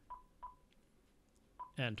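Icom IC-7300 transceiver's touchscreen key beeps: three short beeps of one pitch as keys on the on-screen frequency keypad are tapped. The first two come close together and the third about a second later.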